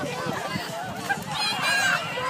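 A crowd of children shouting and shrieking during a water balloon fight, with a high, wavering squeal about one and a half seconds in.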